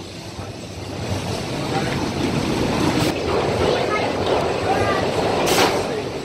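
Invadr wooden roller coaster's train rumbling on its track, growing louder, mixed with the voices of people in the loading station. A brief burst of noise comes about five and a half seconds in.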